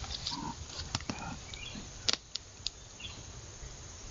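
Young black bear moving over dry forest-floor litter: a few sharp snaps and crackles, the loudest about two seconds in, over a steady low rumble, with a few faint bird chirps.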